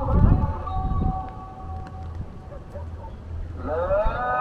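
A distant chanting voice over a loudspeaker, typical of a muezzin's call to prayer, holding long, slightly wavering notes; a new phrase rises in pitch near the end. Wind rumbles on the microphone underneath.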